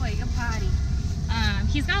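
A woman speaking over a steady low rumble.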